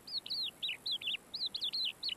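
Small bird chirping in a quick run of short, high notes, about five or six a second.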